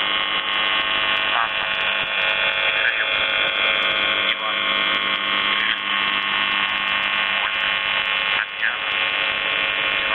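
The steady buzz tone of Russian military shortwave station UVB-76, 'The Buzzer', on 4625 kHz, heard through a shortwave receiver. Short warbling whistles of interference wander over it, and the buzz dips briefly a few times.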